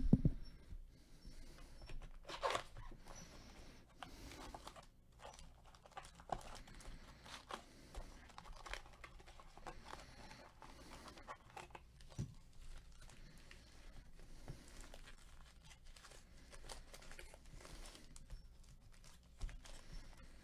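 Foil-wrapped trading card packs being handled and torn open with gloved hands: quiet, scattered crinkling and tearing of the wrappers, with a sharp knock right at the start.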